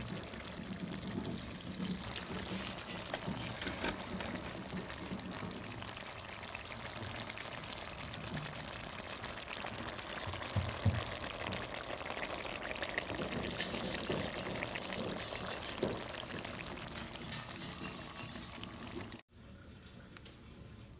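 Star fruit curry simmering in a pot, a steady bubbling, crackling sizzle of the sauce that cuts off suddenly near the end.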